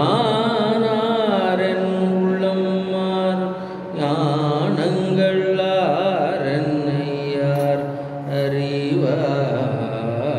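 A man singing a Tamil devotional hymn, drawing out long vowels with wavering, gliding ornaments, with a brief pause for breath about four seconds in.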